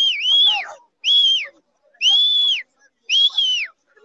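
Loud, shrill whistle blasts. A warbling blast that dips twice in pitch ends near the start, and three more follow about a second apart, each rising, holding and falling away.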